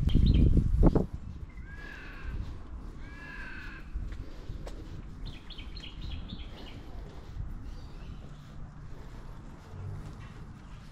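Birds calling: two swooping calls about a second and a half apart, then a quick run of short high notes a few seconds later. A loud low rumble fills the first second.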